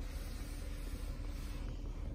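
Steady low hum inside the cabin of a running 2023 Chevrolet Traverse, with a faint steady tone held throughout.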